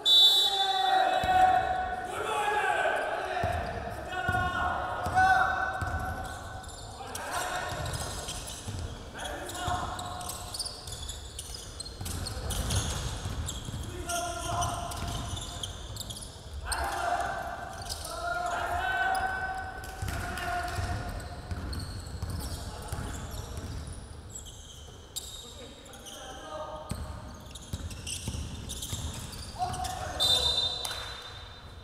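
Basketball being dribbled and bounced on a gym's wooden court, players' voices calling out over it in the echoing hall, with a short high tone like a referee's whistle at the very start and again at the end.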